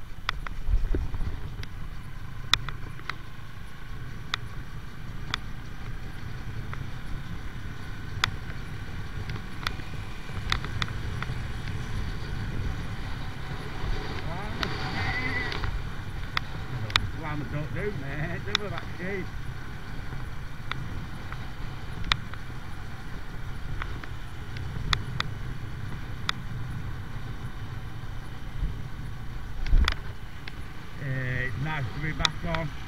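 AJS Tempest Scrambler 125's single-cylinder four-stroke engine running steadily as the bike cruises, with scattered sharp clicks.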